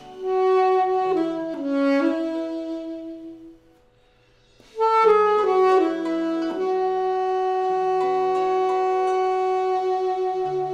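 Alto saxophone playing a slow melody over a soft, lower accompaniment. One phrase ends about four seconds in with a short pause, then a new phrase begins and settles on a long held note.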